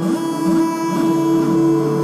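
Live dream-pop band playing: electric guitar over sustained keyboard tones, with the held chord changing right at the start.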